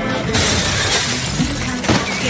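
Glass shattering in a loud, noisy crash that starts about a third of a second in and carries on, with a sharp hit near the end.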